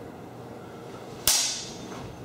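A single sharp clash of two training longsword blades striking each other, a little over a second in, followed by a brief high metallic ring.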